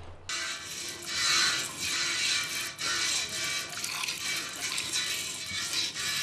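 Milk squirting into a steel pot in repeated strokes as a cow is milked by hand, a hiss that swells about once a second.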